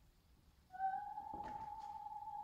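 A soprano voice in an opera house holding a single high note, about G above the treble staff, which begins with a slight upward slide about two thirds of a second in after near silence. A brief rustle from the audience sounds under it near the middle.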